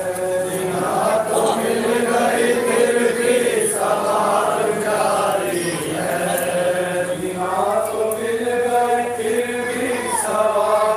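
Men chanting a noha, a Shia Muharram lament, with long drawn-out notes that rise and fall phrase by phrase.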